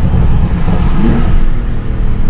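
Porsche 991.2 Turbo S's twin-turbo 3.8-litre flat-six, catalytic converters removed and fitted with a Techart exhaust, accelerating, heard from inside the cabin. The engine note climbs about a second in.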